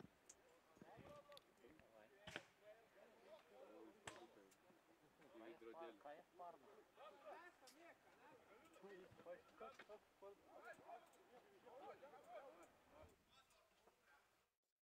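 Faint, distant voices of rugby players calling out on the pitch, with a few sharp clicks, the clearest about two and four seconds in.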